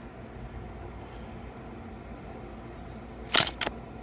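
Camera shutter sound, two quick clicks close together near the end, over faint room tone.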